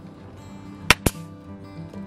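Pneumatic 18-gauge brad nailer (Hitachi NT50AE2) firing into wood, two sharp snaps close together about a second in, over soft background music.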